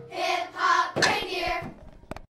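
Voices singing a few short closing phrases of a hip-hop song, with a sharp hand clap about a second in.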